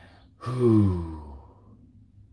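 A man sighing once, a long voiced sigh that falls in pitch, starting about half a second in.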